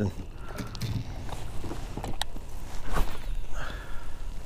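Wind buffeting the microphone on an open boat deck, a steady low rumble, with a couple of sharp clicks about two and three seconds in.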